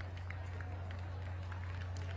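Outdoor crowd ambience: a steady low hum under faint, indistinct voices, with scattered light clicks.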